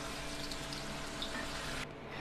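Oil sizzling steadily in a wok around an egg-stuffed tomato as it fries, with the hiss dropping away abruptly near the end.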